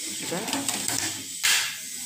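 A person's voice, faint and mumbled, with a short sharp hiss about one and a half seconds in, over a steady background hiss.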